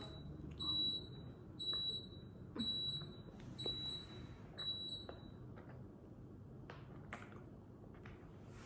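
A high electronic beep repeating about once a second, five times, then stopping about five seconds in. A few faint clicks follow near the end.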